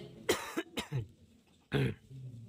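A person coughing: a few short coughs in quick succession, then another near the end.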